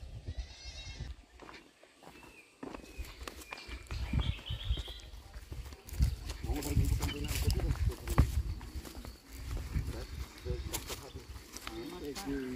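Footsteps crunching on a gravel and stone path, with people's voices talking at moderate level.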